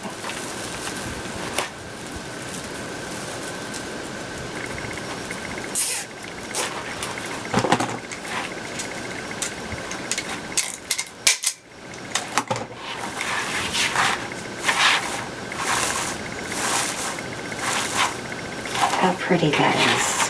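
Stiff plastic deco mesh rustling and crinkling as it is handled, scrunched and fluffed on a wire wreath form: irregular crackles and rustles that grow busier over the second half.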